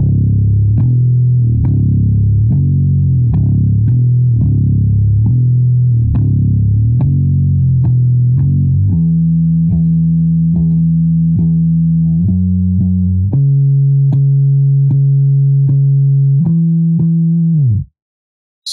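Fender Precision Bass in drop B tuning, played with a pick, running through a riff. The first half is quick repeated low notes; from about nine seconds in come longer held notes higher up the neck, and the playing stops sharply just before the end.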